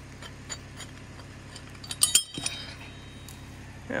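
Steel winch-cable hook clinking with a short metallic ring as it is hooked onto the tree, two sharp clinks about two seconds in. An engine hums steadily at idle underneath.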